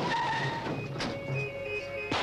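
A car skidding with its tyres squealing, mixed with film score music.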